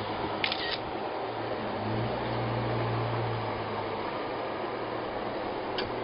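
Jeep Wrangler JK Unlimited engine heard at a distance as a low hum while the Jeep crawls over rock ledges, swelling about two seconds in, under a steady hiss. A few sharp clicks come near the start and again near the end.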